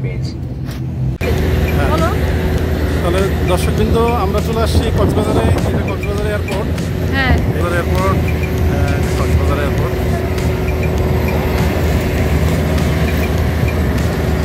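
Aircraft cabin rumble for about a second, then a cut to busy airport outdoor ambience: scattered voices of people talking over a steady low engine hum.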